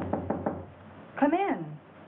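Quick knocking on a door, about six fast raps in the first half-second, followed about a second later by a short called word from a voice whose pitch rises and then falls.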